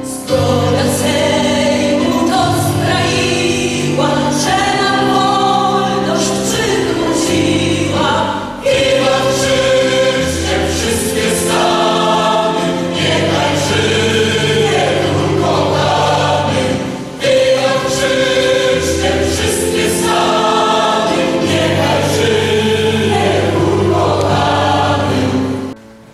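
A choir singing a slow song in long held chords, in three phrases with short breaks about a third and two thirds of the way through; the singing stops just before the end.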